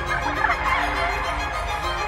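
A burst of warbling bird calls in the first second, over background music.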